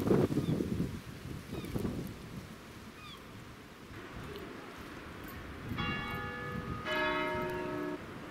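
A church bell strikes twice, about a second apart; the second stroke is louder and rings on. Before the bell, gusts of wind buffet the microphone.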